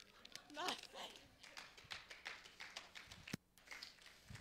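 Faint, quiet moment in a church sanctuary: a brief soft voice about half a second in, then scattered light taps and rustles, with one sharp click near the end.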